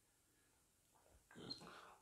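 Near silence: room tone, with a faint, brief sound in the last second.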